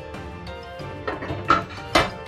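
Background music playing, with two sharp knocks near the end, half a second apart, as a red baking dish is set down on the cast-iron stove grates.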